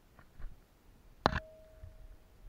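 Two faint taps, then one sharp metallic clink of climbing hardware against rock, with a clear ringing tone that dies away over about a second.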